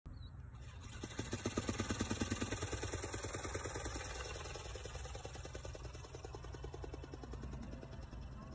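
Hanvon Go Go Bird remote-control eagle's electric motor driving its flapping wings: a rapid, even, pulsing buzz of wingbeats. It is loudest in the first couple of seconds, then fades as the bird is thrown and flies away.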